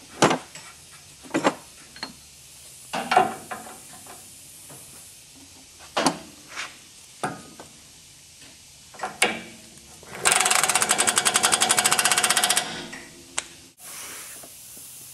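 Scattered metal clinks and knocks as the tie rod end is fitted to the steering knuckle, then a pneumatic impact wrench runs for about two and a half seconds near the end, hammering rapidly as it runs down the tie rod end's castle nut.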